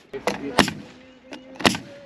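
Pneumatic nail gun firing nails into a fascia board: two sharp shots about a second apart, with a few lighter clicks between.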